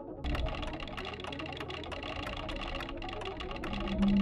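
Rapid, even run of light clicks over a low, steady music bed: a soundtrack's ticking effect in an animated data graphic.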